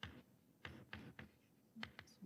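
Chalk on a chalkboard while a word is written: several short, faint taps and scrapes of the chalk stick.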